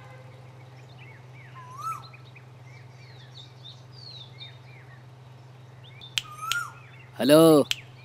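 Small birds chirping and twittering over a steady low hum, with a few louder chirps about two seconds in and again around six seconds in.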